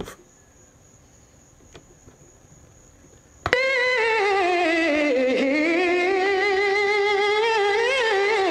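A vocal run sample played back from a Roland SP-303 sampler: it cuts in suddenly about three and a half seconds in as one long sung note with a wavering vibrato. The note dips in pitch and then climbs back up. Before it there is only faint background with a soft tap.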